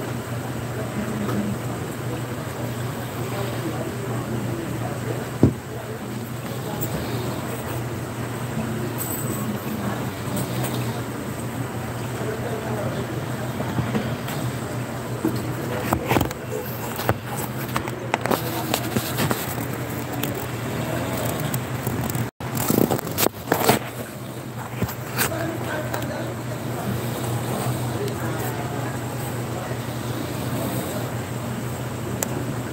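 Faint background voices over a steady low hum. A brief dropout about two-thirds of the way through is followed by a short cluster of sharp knocks.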